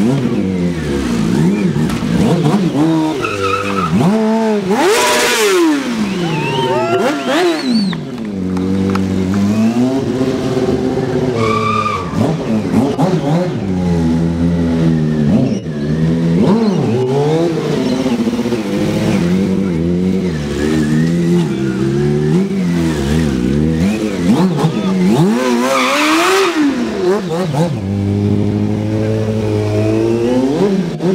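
Sportbike engine revved up and let fall again and again, its pitch rising and dropping in long swoops as the bike is ridden through stunts. Short bursts of tyre squeal come about five seconds in and again near the end.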